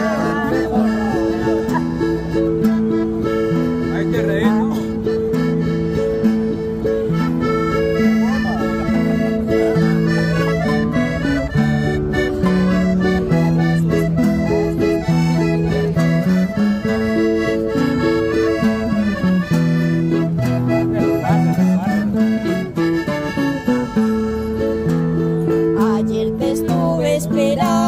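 Instrumental break of an accordion-led corrido played live: the accordion carries the melody over strummed acoustic guitars, with no singing.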